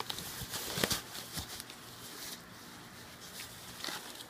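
Rustling of a foam packing sheet as a guitar is handled in its box, with a few sharp clicks and light knocks; the rustling is busiest in the first second and a half.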